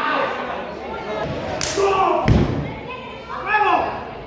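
A wrestler's body hitting the ring canvas: a sharp smack followed by a heavy thud about two seconds in, with spectators shouting.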